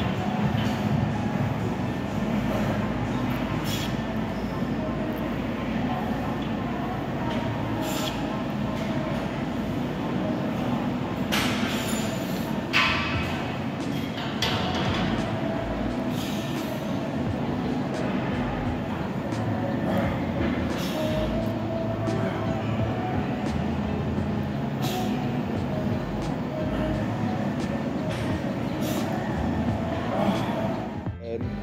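Steady gym room noise: a low rumble with indistinct background voices, broken by a few short knocks, the loudest about 13 seconds in.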